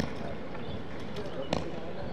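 Crowd voices murmuring indistinctly, with two sharp knocks: one at the very start and one about a second and a half in.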